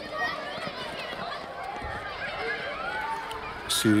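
Schoolchildren's voices in a playground: many overlapping high-pitched calls and chatter at play. A man starts speaking at the very end.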